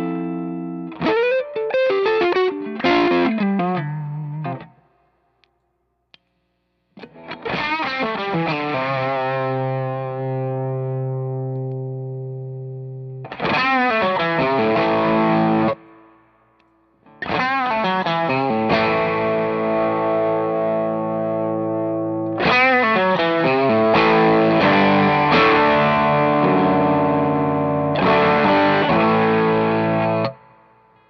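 Electric guitar played through a Cusack Screamer Fuzz pedal: fuzz-distorted chords and single notes ringing out with long sustain. The playing comes in short phrases, with brief pauses about five seconds in and again around sixteen seconds, and cuts off at the end.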